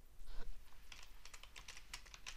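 Faint typing on a computer keyboard: a quick, uneven run of keystrokes.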